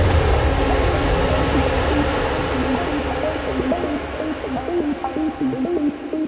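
Breakdown in a progressive house track: the kick drum drops out at the start, leaving a fading wash of noise over a low sustained synth. From about three seconds in, short gliding pitched notes come in as the level slowly sinks.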